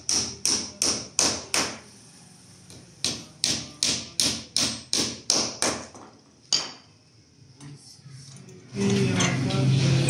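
Small wooden-handled hammer driving nails into a pine door frame: quick, even strikes about two and a half a second, a pause of about a second, another run of about eight strikes, then a single blow and a few light taps. A louder, steadier sound with a low hum takes over near the end.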